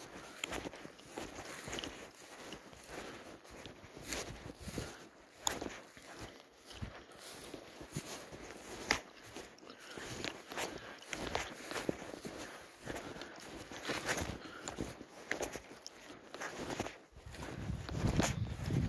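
Footsteps walking through dry stubble and grass, an irregular run of crackling steps and rustling.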